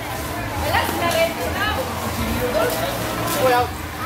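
Voices talking in the background, some high-pitched, over a steady low hum.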